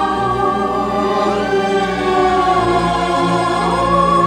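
Studio orchestra and chorus performing the end-title theme of a 1950s Hollywood film score, the choir singing long held chords over the strings.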